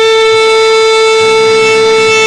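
Alto saxophone holding one long, steady note.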